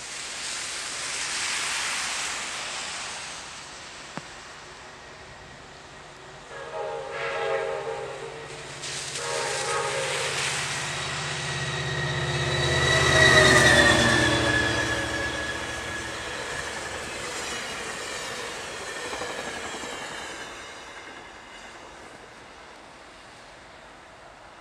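Sounder commuter train led by an EMD F59PHI diesel locomotive, sounding its horn twice as it approaches. The engine drone and horn are loudest as the locomotive passes, with the pitch dropping as it goes by. The train's rumble then fades as it moves away.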